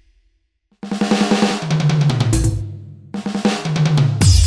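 Yamaha DTX electronic percussion pad struck with sticks, playing a DJ-style Bhojpuri drum patch: kick, snare and hi-hat with a bass-guitar line underneath. The beat cuts out for about the first second, then comes in, thins out about three seconds in and picks up again.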